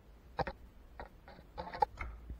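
A few short clicks and rattles from a recurve bow and its fittings being handled, the sharpest one near the end.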